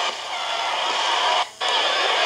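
Steady rushing noise from a taped TV broadcast's soundtrack, broken by a brief dropout about one and a half seconds in.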